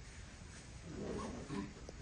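A quiet lull in a room, with a faint, low murmur of a voice for about a second in the middle.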